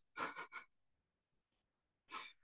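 A woman's short breathy laugh, three quick exhaled puffs, then near silence.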